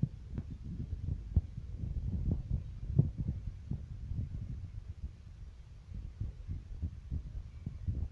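Muffled low rumble with irregular taps and thuds heard inside a car moving through a flooded street in heavy rain: engine and water under the car, with rain striking the car body.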